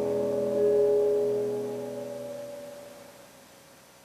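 Piano music closing on held notes that ring on and die away over about three seconds, leaving faint hiss.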